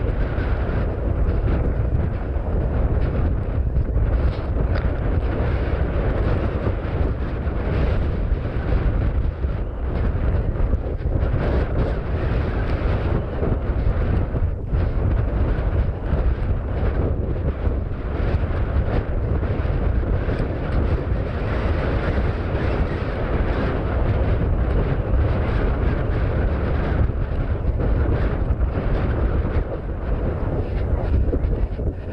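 Wind buffeting a head-mounted GoPro's microphone: a steady low rumble with hiss above it, unbroken throughout.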